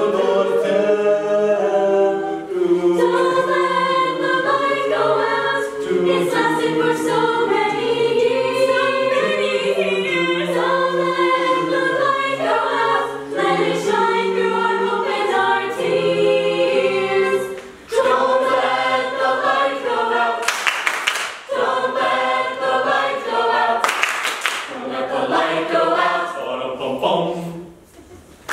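Mixed-voice a cappella group singing a Hanukkah medley, chords of backing voices under a male lead singer at first. Two loud hissing bursts come in the last third, and the singing stops just before the end.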